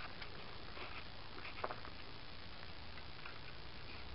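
Faint handling noise: a few light ticks and taps as hands move the tachometer wires over the moped's tank, over a quiet background hiss.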